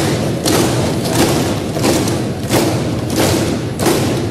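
Members of parliament pounding on their desks in applause: a loud, dense, continuous rumble of overlapping thuds filling the chamber.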